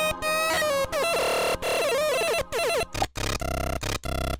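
RANDRM homemade generative drum machine playing its glitchy digital drum sounds, triggered from its arcade buttons. A run of short electronic bursts, some holding a buzzy pitch and some gliding down or wobbling, each cutting off abruptly. Choppier, lower buzzing comes near the end.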